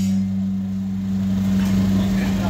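An engine running with a steady low hum.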